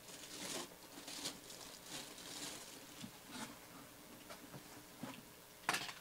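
Faint rustling and crinkling of a plastic bag and cardboard display box being handled, with scattered small taps and a sharper knock near the end.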